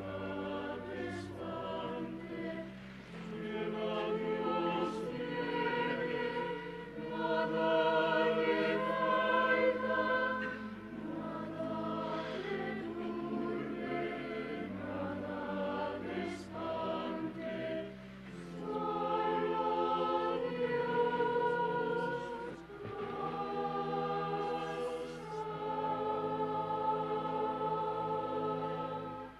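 A church choir singing a slow hymn, in long held phrases with short breaks between them.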